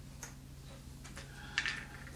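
Faint clicks and taps of small objects being handled on a desk, with a short louder clatter near the end, over a faint steady low hum.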